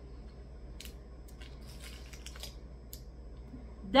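Faint chewing of a dark chocolate bar: a few soft scattered clicks and rustles over a low steady hum.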